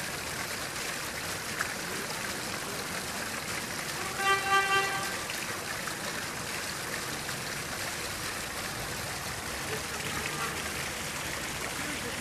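A short vehicle horn toot about four seconds in, with two or three quick pulses in under a second, over a steady hiss of outdoor background noise.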